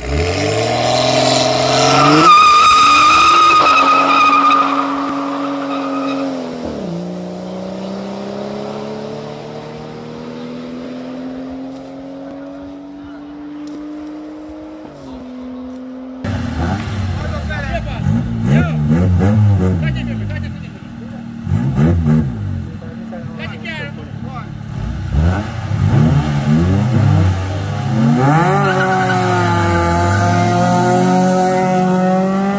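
BMW 535i's turbocharged inline-six launching hard from a standstill and accelerating away, its pitch climbing and dropping at gear changes about seven and fifteen seconds in as it fades into the distance. After that, other cars' engines revving up and down in repeated blips.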